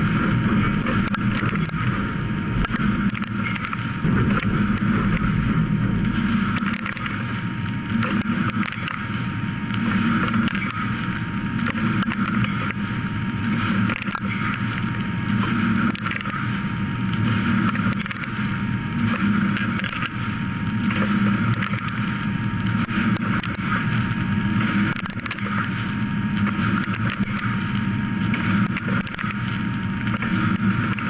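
DN Solutions DNM 5700L machining center drilling steel with a 12.7 mm (half-inch) Kennametal HPX carbide drill at 130 inches per minute, under heavy coolant spray. A steady cutting noise with a thin high tone, swelling and easing every couple of seconds as it drills hole after hole.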